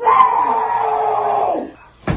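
A man's long, drawn-out yell of "nooo", held for about a second and a half with its pitch falling slightly, then cut off sharply.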